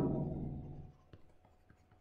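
Faint taps and scratches of a stylus writing on a tablet screen, a few light ticks about a second in.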